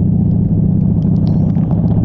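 Honda Shadow 750 Aero's V-twin engine running steadily at highway speed under a heavy wind rumble, with scattered raindrops ticking on the camera and windshield.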